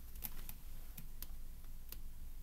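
A few faint, light clicks of fingers handling the glossy pages of a paperback picture book held up close.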